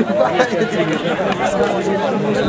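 Several spectators' voices talking over one another at once, a continuous, indistinct chatter close to the microphone.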